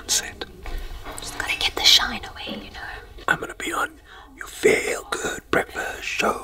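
Whispered speech close to the microphone: people talking in whispers to stay silent near a live broadcast.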